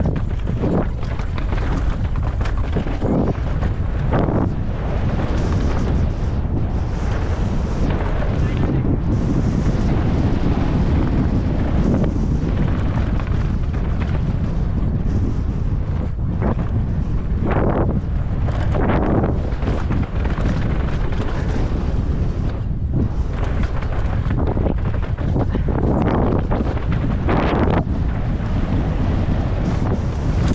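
Wind rushing hard over the camera microphone of a downhill mountain bike at speed, over the rumble and rattle of knobby tyres and the bike on a rough dirt and rock trail, with frequent short knocks from bumps.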